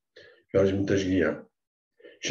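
A man's voice speaking one short phrase, about a second long, after a brief soft sound, then a pause.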